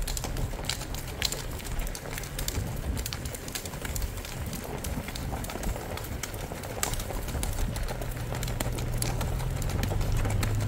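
Hoofbeats of a gaited mare on a dirt road, a quick, even run of light strikes, with birds calling in the background.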